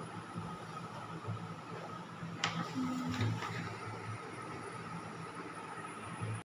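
Faint steady room hum, with a single sharp click about two and a half seconds in.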